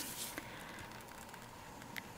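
Quiet room tone with a couple of faint clicks and soft handling sounds as a hot glue gun is pressed to the paper and pom-pom trim.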